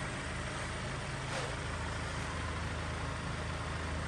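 A MINI Cooper S's 2.0-litre petrol four-cylinder engine idling, a steady low hum.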